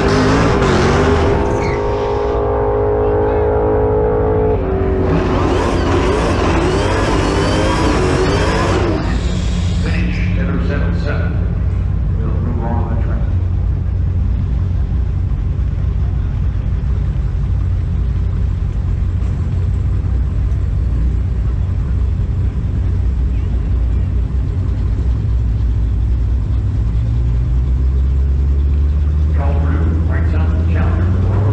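Modern Hemi V8 drag cars at the strip. For the first nine seconds there are squealing, revving sounds from a burnout, then a steady low engine idle drone that rises near the end as an engine revs up.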